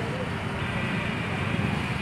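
Steady road traffic noise: cars and motorbikes running along a street.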